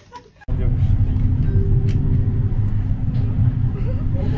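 Tram running, heard from inside the passenger car: a steady low rumble with a steady electric hum, cutting in abruptly about half a second in after a brief quieter moment.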